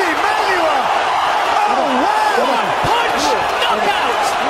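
Arena crowd cheering and shouting after a knockout, many voices overlapping in a loud, continuous roar.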